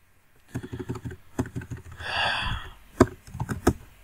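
Typing on a computer keyboard: a quick, uneven run of key clicks while code is edited, with a brief hiss about halfway through.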